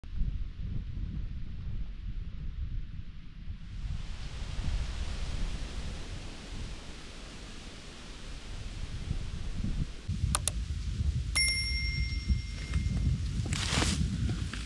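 A click-and-bell-ding sound effect: two quick clicks, then about eleven seconds in a third click and a single bell ding that rings on for about a second and a half. Under it runs a low rumble of wind noise on the microphone, and a short rustle comes near the end.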